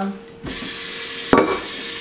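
Kitchen faucet turned on about half a second in, water running steadily into a stainless steel pot in the sink to fill it, with a single knock about a second later.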